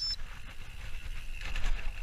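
Mountain bike descending a dirt woodland trail: a steady low rumble of wind buffeting the camera's microphone, over the hiss of the tyres on the dirt. Short rattles and clicks from the bike jolting over rough ground come near the end.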